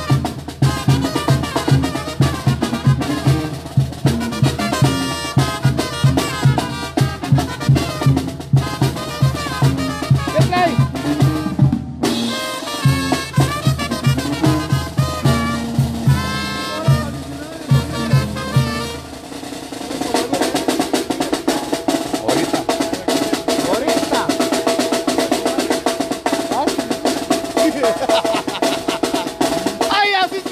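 Live Zacatecan tamborazo band playing, with horns over a steady beat on the big tambora bass drum and snare. About two-thirds of the way through, the steady beat drops out and the band holds a long note over a snare roll.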